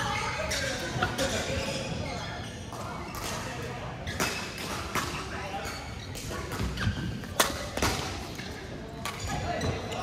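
Badminton rackets striking a shuttlecock in a rally: a string of sharp hits, the loudest about seven seconds in, ringing in a large hall over a background of voices.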